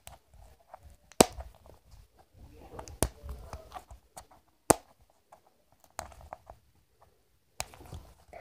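Handling noise of a plastic-wrapped toy ball being pried open: faint crinkling and rubbing with four sharper clicks spread through, as the layer resists opening.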